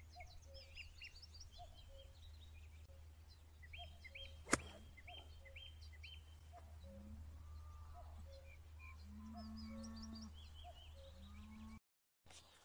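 A single sharp click of a golf club striking the ball off fairway turf, about four and a half seconds in, with faint birdsong chirping throughout.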